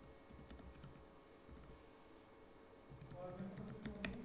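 Faint typing on a computer keyboard: a few scattered keystrokes, with a short low vocal murmur near the end.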